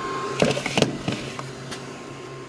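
A few light knocks and taps of handling, bunched together about half a second in, over a steady low hum.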